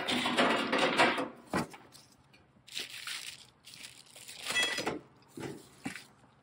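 Cardboard and plastic packing wrap rustling and crinkling as trailer parts are pulled from their shipping box, in bursts, the longest and loudest in the first second and a half.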